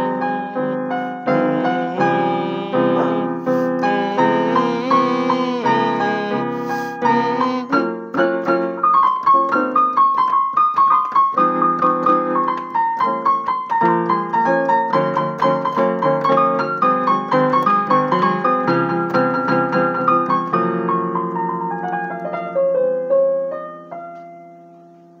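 Piano played with chords under a melody line, the notes following one another steadily; near the end the playing stops and the last chord rings on and fades.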